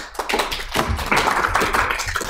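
Audience applauding: many hands clapping at once, building up in the first half second and holding steady.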